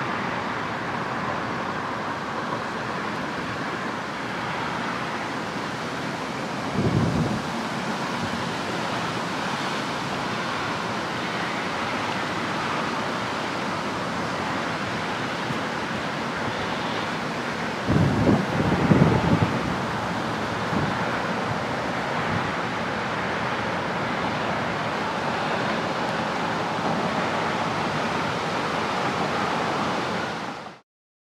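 Steady outdoor hiss of wind and distant road traffic, with wind buffeting the microphone twice: briefly about seven seconds in, and for a second or two around eighteen seconds in.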